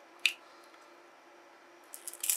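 Needle-nose pliers working the rubber end piece off a small 18650 battery pack: one sharp click about a quarter second in, then a couple of light clicks near the end.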